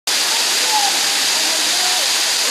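Steady rushing of running water, with faint, indistinct voices underneath.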